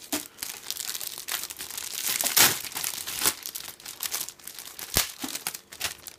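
Clear plastic bags holding plastic model-kit runners crinkling as they are handled and turned over, in irregular rustles. The loudest rustle comes about two and a half seconds in, and there is a single sharp click about five seconds in.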